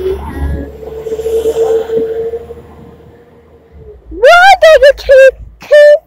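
Diesel passenger train pulling away past a station platform: a low rumble with a steady hum that fades out over about three seconds. From about four seconds in, a child's loud, high-pitched vocalizing takes over.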